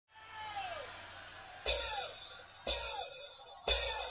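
Drum kit in a live rock concert recording: three crash-cymbal-and-kick-drum hits about a second apart, starting about one and a half seconds in, each cymbal ringing out until the next, after a faint quiet opening.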